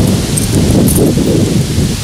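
Wind buffeting the microphone: a loud, steady, rough low rumble.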